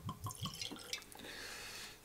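Whisky glugging out of a glass bottle into a tulip nosing glass, in quick even glugs about six a second for the first half second or so, then a softer, steadier pour.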